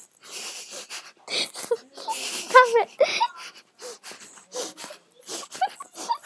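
Wheezy, breathy giggling in short bursts with a few high squeaky notes: a woman imitating a girl's laugh.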